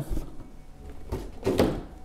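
Cardboard packaging boxes being handled and set down on a wooden tabletop, with a soft knock at the start and another about one and a half seconds in.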